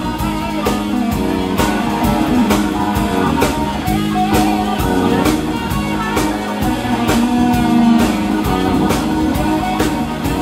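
Live blues-rock band playing an instrumental passage: electric guitar through a Marshall amp over a steady drum-kit beat, with keyboard.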